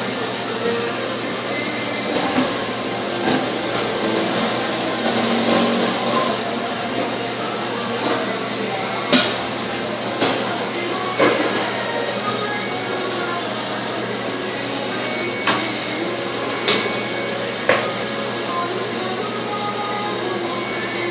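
Steady background music and indistinct voices, with about half a dozen sharp knocks in the second half from a kitchen knife striking a plastic cutting board while salmon skin is cut away from the fillet.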